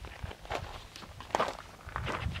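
Quiet footsteps on stony desert ground: a few separate steps about a second apart.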